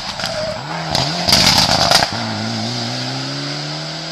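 Mitsubishi Lancer Evo X rally car's turbocharged four-cylinder engine revving through a corner. About a second in the revs dip and climb, then a loud burst of rough noise comes in. After it the engine pulls away with a steady, slowly rising pitch.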